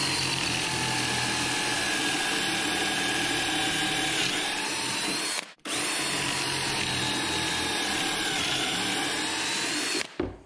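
DeWalt 20V cordless drill boring pocket holes with a stepped bit through a Kreg R3 jig into a wooden board. The motor whines steadily in two long runs, stopping briefly about five and a half seconds in, and its pitch dips slightly near the end of each run as the bit cuts in.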